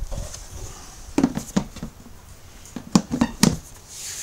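Plastic cooler mash tun's lid being closed and pressed shut: a few sharp plastic knocks in two clusters, about a second in and about three seconds in, the later ones loudest.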